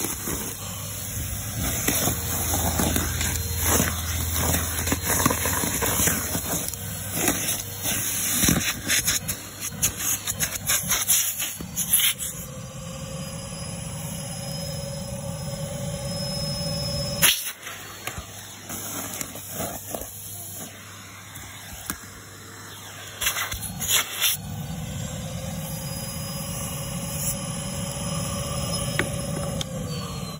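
Numatic Henry vacuum cleaner running while sucking up leaves and garden debris, which rattle and crackle through the hose for the first dozen seconds. After that it runs more steadily with a whine that rises slightly, broken by a sharp knock about 17 seconds in and another about 24 seconds in.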